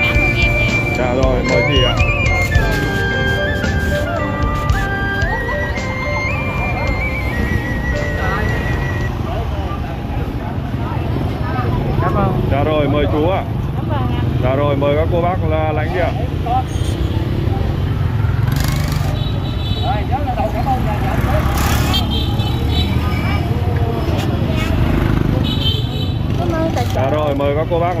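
Street ambience of steady motorbike and road traffic, with a melody of background music through the first several seconds and indistinct voices of people nearby later on.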